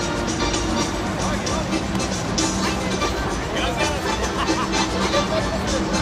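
Music playing over a baseball stadium's PA system, with crowd hubbub and nearby voices talking, more so in the second half.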